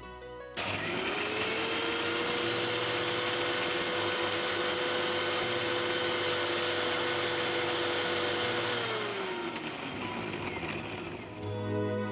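Electric mixer grinder with a small steel jar, grinding dry ingredients to a powder: switched on about half a second in, the motor quickly runs up to a steady whine over a loud noisy churn. About nine seconds in it is switched off, and the whine falls away as the motor spins down.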